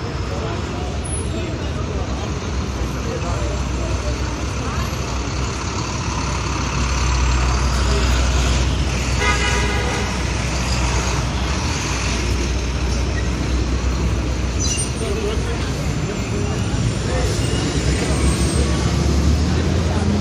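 Dense city street traffic: a steady wash of engines and road noise, with a deep engine rumble swelling about seven seconds in and a vehicle horn sounding briefly near the middle.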